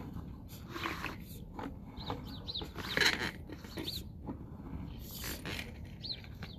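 Small birds chirping in short, high, scattered calls over low rumbling handling noise.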